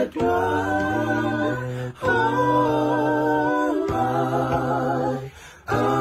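Unaccompanied voices singing slow, held notes in harmony, a cappella, with a brief break between phrases every couple of seconds and a short pause near the end.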